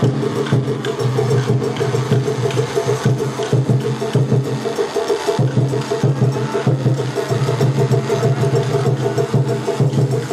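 Festival hayashi music from a float: drumming with rapid, sharp wooden clicks over steady low tones, the tones dropping out briefly about halfway.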